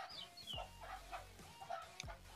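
Faint background with a few short, soft animal calls repeating.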